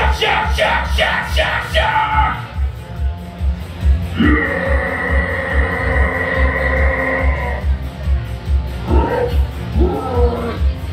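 A band soundchecking on stage: a bass drum thuds repeatedly while other instruments sound short pitched figures. About four seconds in, a pitched note is held for roughly three seconds.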